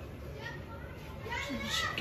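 Children's voices calling out faintly at a distance as they play, over a low rumble.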